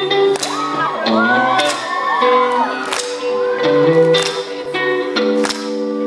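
A live band plays a pop song's instrumental intro: electric guitar and keyboard notes over drum hits, with high screams from the audience rising and falling over the music in the first few seconds.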